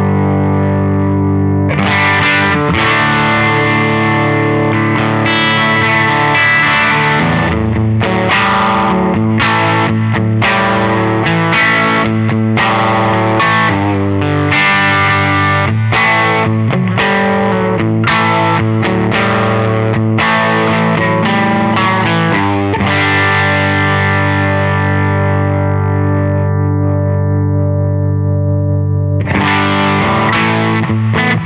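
Semi-hollow electric guitar played through a Balthazar Cabaret MKII 15-watt EL84 tube amp, strumming chords with repeated attacks. Near the end a long chord is left to ring and fade before the playing starts again.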